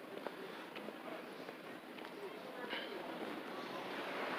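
Quiet outdoor ambience: a steady hiss that grows slightly louder toward the end, with faint distant voices and a few light clicks.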